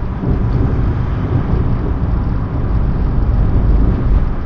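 Loud, steady low rumble of background noise on a covert surveillance recording, with no clear words.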